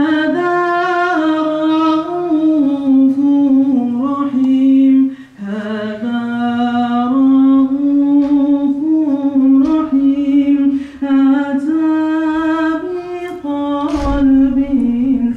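A single voice singing unaccompanied, an Islamic devotional chant with long held notes bent into ornaments, breaking briefly for breath about five seconds in.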